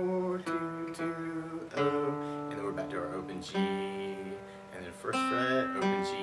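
Steel-string acoustic guitar playing the E minor bridge pattern. Strummed chords are struck about six times and left to ring, with a picked melody line moving through them.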